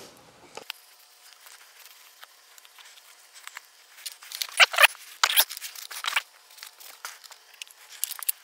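A cloth rubbing and wiping the plastic frames of in-wall and in-ceiling speakers, with light plastic clicks and knocks as the speakers are handled. The loudest wiping strokes come about halfway through.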